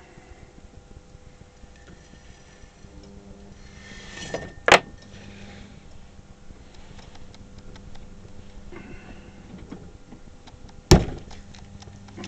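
Potter's wheel running with a faint steady hum, broken by two sharp thumps, one about five seconds in and a louder one near the end, the latter a lump of clay slapped down onto the wheel head for the next pot.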